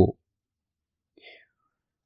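The tail of a spoken word at the very start, then near silence broken by one faint, brief whispered sound a little over a second in.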